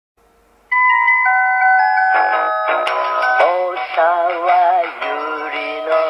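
Radio station jingle. About a second in, ringing bell-like chime notes start it off, and from about two seconds a woman sings the jingle's tune with vibrato over the backing music.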